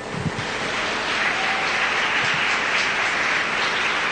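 Audience applauding in an ice rink at the end of a figure skating program, swelling over the first second and then holding steady.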